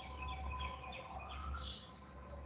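Faint bird chirps in the background over a steady low hum.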